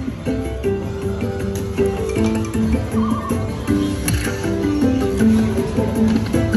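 Slot machine game music from an Aristocrat Lightning Link Tiki Fire machine: a bright electronic melody of short stepped notes with chimes, playing as the Hold & Spin bonus feature starts.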